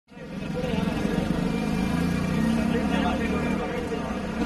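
A car engine running at low speed close by, a steady low hum, with people talking indistinctly around it.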